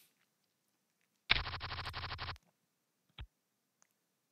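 Poker client sound effect as a new hand is dealt: about a second of rapid, rattling ticks like cards being shuffled and dealt. A single short click follows about a second later.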